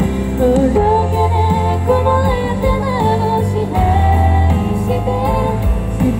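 A woman singing a pop song into a handheld microphone through the stage PA, over pop backing music with a heavy bass. The melody moves through long held, gliding notes.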